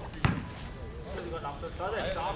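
A basketball hitting the concrete court once, a single sharp thud a moment in, with players' voices calling across the court later on.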